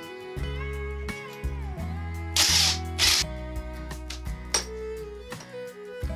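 Background guitar music with a steady bass line, and a brief rasping noise about two and a half seconds in.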